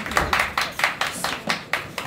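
Quick, uneven hand clapping from ringside, fading toward the end.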